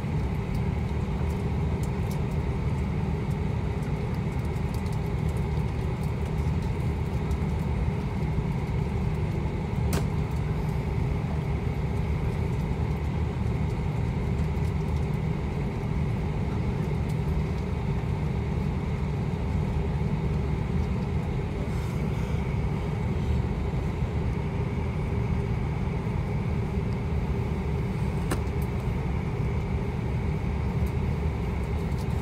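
Cabin noise of an Airbus A340-500 taxiing on its four Rolls-Royce Trent 500 engines: a steady low rumble with a thin, even engine whine on top.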